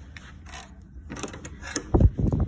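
Metal lever handle and latch of a hotel room door clicking and rattling as the door is worked open, with a louder knock near the end, over a steady low hum.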